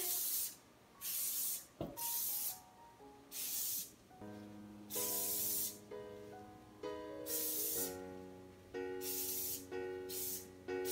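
Aerosol can of Design Master Ultra Leaf shine sprayed onto plant leaves in about seven short hissing bursts, roughly one a second. Soft background music with piano-like notes comes in about four seconds in.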